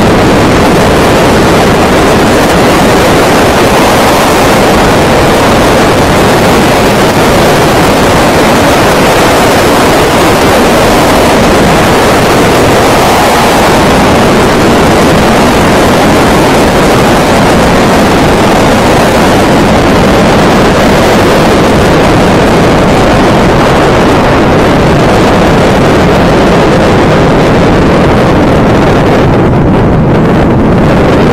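Loud, steady rush of wind over the microphone of a camera riding with a person flying face-down along a zip wire at speed. The hiss thins a little near the end.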